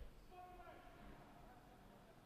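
Near silence: faint ice rink ambience, with a faint distant voice calling out briefly about half a second in.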